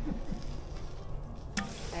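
A spoon knocking once against a large enamel pot as lard is scooped into it, a single sharp clack about one and a half seconds in, over a low background rumble.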